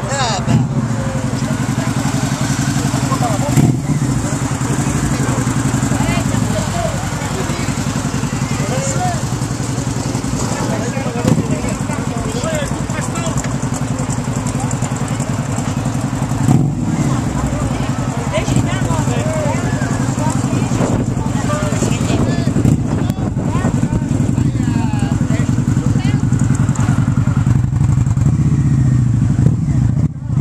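An engine idling steadily, a low even rumble with a fast regular pulse, with a few brief knocks over it.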